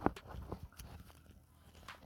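A few light clicks and taps of hand handling, sharpest right at the start, then a couple of fainter ticks over a quiet background.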